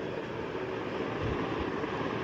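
Steady whooshing background noise, like a running room fan, with a few soft low thumps a little past the middle as the clothes and phone are handled.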